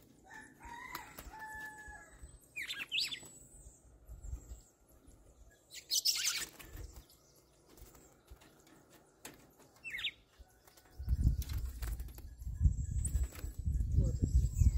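Red-cowled cardinals calling in short notes and chirps while flapping their wings around a wire cage, with a loud flutter of wings about six seconds in. A low rumbling noise comes in near the end.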